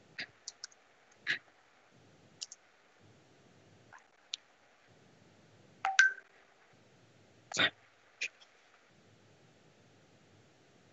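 Scattered short clicks and knocks, about a dozen in all, heard through a video call's audio over faint background noise. The loudest are a quick pair about six seconds in and a longer knock a second and a half later.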